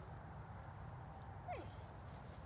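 Faint, steady low background rumble, then a man's single called 'Hey' near the end that falls in pitch, a release cue to a dog waiting at the start line.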